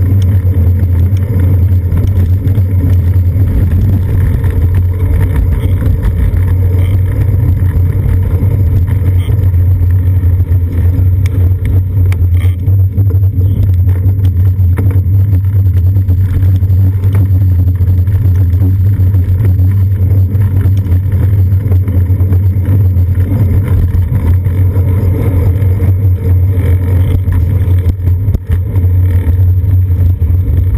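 Steady, loud low rumble of wind buffeting and road vibration on a seat-post-mounted GoPro Hero 2 on a moving bicycle in strong wind, with the engines of city buses, vans and taxis close by.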